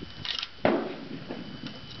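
A single sharp knock about two-thirds of a second in, followed by a few faint taps: a short starter being driven down to start a patched round ball into the muzzle of a .54 caliber Hawken muzzle-loading rifle.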